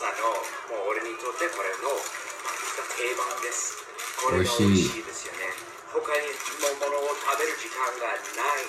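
A man talking throughout, his voice thin with no bass. Partway through, a second, fuller-sounding man's voice cuts in briefly with a short utterance.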